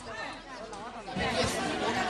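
A crowd of people talking over one another, several voices at once, getting louder and busier about a second in.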